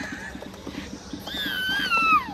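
A toddler's high-pitched vocal squeal starting a little over a second in and sliding slowly downward in pitch. Under it run a steady low hum and a quick series of light ticks.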